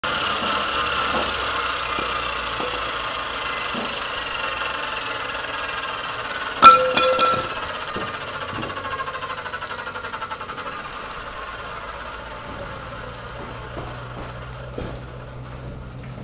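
An abrasive cut-off saw's motor and disc winding down, its whine slowly falling in pitch and fading. About a third of the way in, a single sharp metallic clank rings out.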